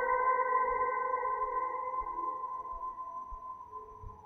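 Ambient Gibson LPJ electric guitar through reverb and delay pedals: one sustained ringing note with its octaves, fading out steadily.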